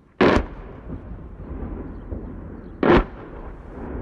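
Two loud explosions, one right at the start and a second nearly three seconds later, each followed by a rolling rumble.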